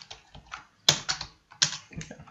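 Typing on a computer keyboard: a run of uneven keystrokes, with one louder key strike a little under a second in.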